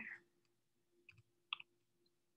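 Near silence with a few faint, short clicks in two pairs, about a second in and again a little later.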